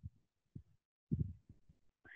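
A few faint, short low thumps in an otherwise quiet pause, about one every half second, the last slightly longer.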